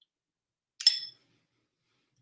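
A metal spoon clinks once against a glass bowl a little under a second in, with a brief, bright ring.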